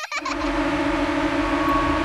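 Cartoon mosquito buzzing sound effect: a steady, unwavering buzz with a hiss over it, starting just after the start.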